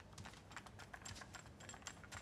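Faint, irregular clicks and light rattles of a plastic audio cassette being handled.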